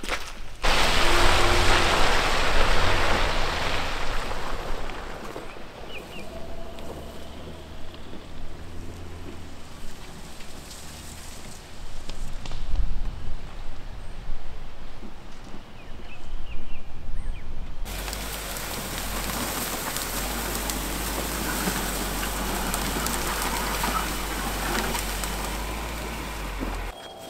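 An SUV being driven off-road into the bush: its engine running with tyres rolling over rough ground and dry brush, the noisiest stretch in the first few seconds. Partway through the sound changes abruptly to a steady low engine hum under even noise.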